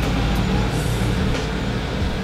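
Bus engine running as the bus moves off, a steady low rumble that fades slightly near the end.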